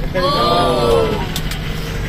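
Steady low rumble of a minibus engine and road noise heard inside the passenger cabin. A person's voice gives one drawn-out call, its pitch rising then falling, during the first second.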